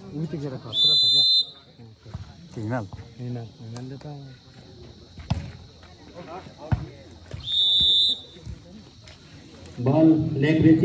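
Referee's whistle blown twice in short, high blasts, about a second in and again about seven and a half seconds in. Between the blasts come two sharp volleyball hits over spectators' chatter.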